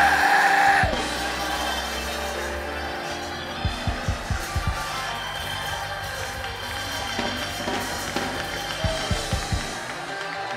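Church band music behind prayer: sustained keyboard chords with a drum kit, its drum hits coming in a quick cluster about four seconds in and again near the end.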